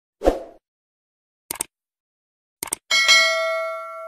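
Stock subscribe-button animation sound effect: a short soft burst, a single click, a quick double click, then a bright notification-bell ding that rings out for over a second.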